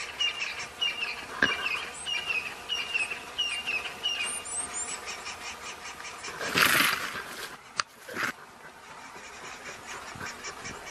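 A bird repeating a short chirping call about twice a second for the first few seconds, over a faint steady insect buzz. About six and a half seconds in comes a loud rushing noise, then a sharp click and a second, shorter rush.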